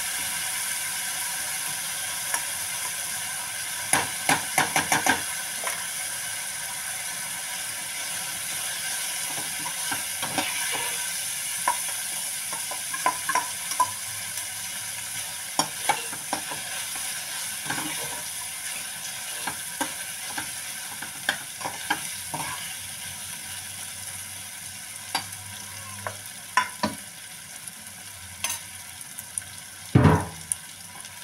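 Onions frying in hot oil with whole spices in a kadai, a steady sizzle that slowly grows quieter, with a metal spoon scraping and knocking against the pan as they are stirred; a quick run of knocks comes about four seconds in.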